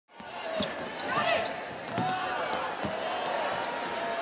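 A basketball bouncing on a hardwood court, three thuds at uneven intervals, with voices in a large arena.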